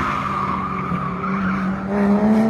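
Sports car sliding through a corner on a racetrack: its tyres squeal over a steady engine note, which begins to climb near the end.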